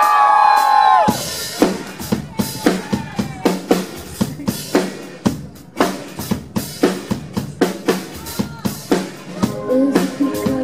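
A live drum kit begins a song's opening beat about a second in, with bass drum and snare strikes at a steady pace of two to three a second. A brief pitched cry, likely a cheer, cuts off as the drums start, and other instruments join near the end.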